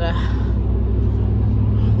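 Steady low drone of road and engine noise inside a pickup truck's cab while driving on the highway.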